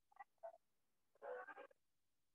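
Near silence, broken by a few faint, short sounds: two tiny blips, then a faint half-second croaky, voice-like murmur a little past the middle.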